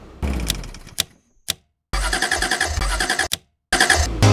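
Sound effect of a car engine cranking and trying to start, in stop-start bursts with rapid rattling repeats, separated by dead silences, with two sharp clicks in the first half.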